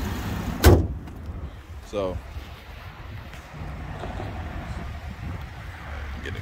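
A single loud slam less than a second in: the hood of a Chevrolet Malibu being shut. A low rumble runs underneath.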